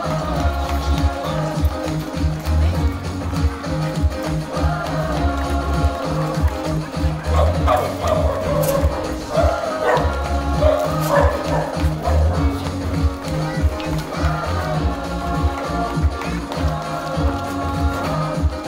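Background music with a steady, heavy bass beat.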